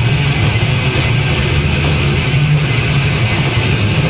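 Death metal band playing live: heavily distorted low guitars and bass hold a low, droning riff that steps between a few notes, under a dense wash of drums and cymbals. It is heard from within the crowd.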